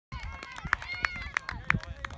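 Footsteps running on grass, about three strides a second, with voices calling out over them.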